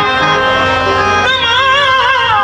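Live qawwali music: steady held harmonium tones, joined about a second and a half in by a singer's voice in a wavering, ornamented melodic line.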